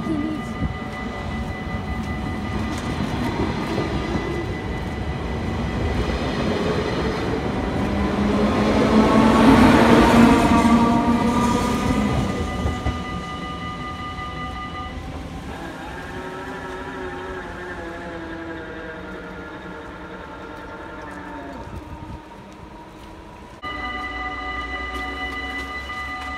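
Electric passenger train passing close by, building to its loudest about ten seconds in and then fading. A level crossing's warning bell rings steadily under it.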